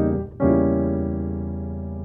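Piano chords played with both hands. A brief chord is cut short at the start, then about half a second in an E diminished seventh chord is struck and held on the sustain pedal, ringing and slowly fading: a gospel passing chord.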